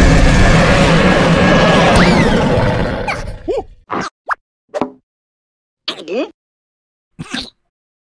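A loud, noisy rush of sound that fades out after about three seconds. It is followed by about six short cartoon plops and bloops, each a quick slide in pitch, with silent gaps between them.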